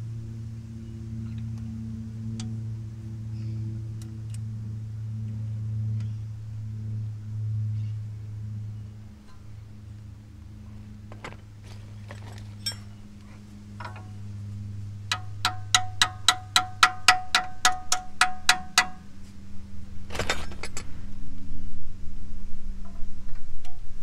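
A quick, evenly spaced run of about seventeen ringing, chime-like pings, four to five a second, lasting about four seconds, over a steady low hum. A few scattered clicks come before it, and a short burst of noise follows.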